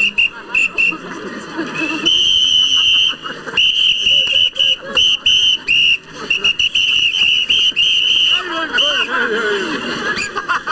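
A high-pitched whistle blown again and again: a few short blasts, one long blast about two seconds in, then a quick run of short and longer blasts. Crowd voices are heard under it near the start and end.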